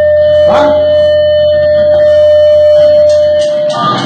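Amplified electric guitar holding one steady ringing tone over a low amplifier hum, with a click about half a second in. The hum cuts off shortly before the end and the tone stops near the end.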